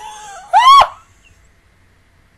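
A woman laughing: a short trailing sound, then one loud, high-pitched squeal that rises and falls, over about a second in.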